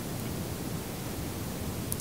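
Steady, even hiss of room tone with no distinct event, apart from a faint tick near the end.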